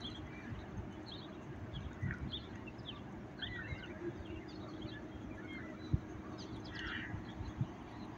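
Scattered small bird chirps over a steady low rumble with a faint hum, and one sharp knock about six seconds in.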